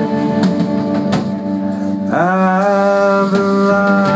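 Live band music: sustained electric guitar chords through an amplifier, with a slide up into a new chord about two seconds in, and a few drum or cymbal hits.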